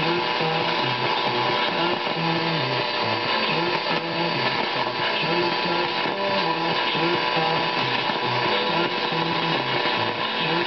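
Radio France International's 162 kHz longwave AM broadcast coming through a Drake SW-4A receiver's speaker: faint music with changing notes, buried in steady static hiss and buzzing interference tones from a weak long-distance signal.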